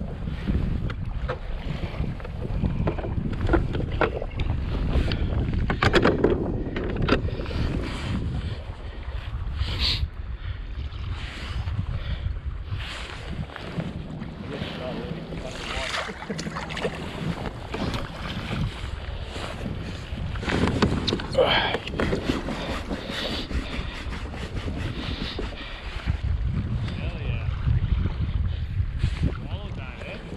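Sea water sloshing and splashing around a camera held at the surface beside a kayak, with wind buffeting the microphone and many short splashes and knocks throughout.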